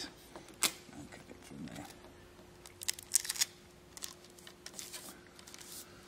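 Handling of a rolled card tube with a sellotaped, folded-in end: a few sharp clicks and short crinkles of card and tape, the loudest about half a second in and a cluster around three seconds in, over a faint steady hum.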